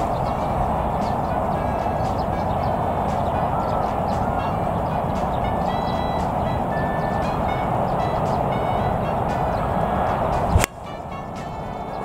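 Steady background music plays while the golfer sets up. About ten and a half seconds in there is one sharp crack of a 5-iron striking a golf ball off the tee, and the music cuts off at the moment of impact.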